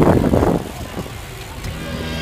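BMX bike hopping up onto a stone ledge and rolling along it: a rough clatter of tyres and frame on the stone, loudest in the first half second, then quieter rolling. Music starts at the very end.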